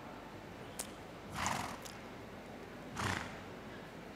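A horse blowing out through its nostrils twice, about a second and a half apart: two soft, noisy snorts. A faint click comes shortly before the first.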